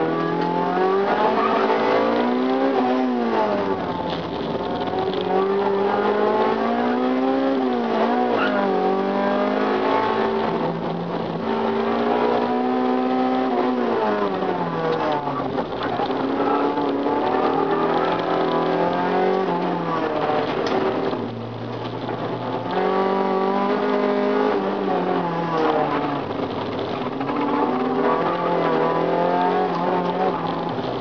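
Honda Civic 1.6-litre four-cylinder engine heard from inside the cabin, driven hard: it revs up and drops back again and again as the car is pushed through gears and bends, with a brief lull about two-thirds of the way through.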